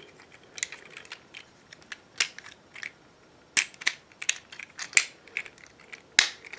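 Hard plastic parts of a Transformers Combiner Wars Offroad figure clicking and snapping as they are folded and pushed into place by hand. A string of sharp, separate clicks, the loudest coming from about halfway in.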